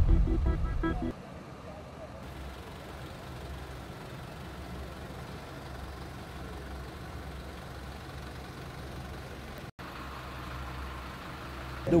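The last of a music jingle fades out in the first second, then a steady low rumble of background noise continues, with a brief dropout near the end.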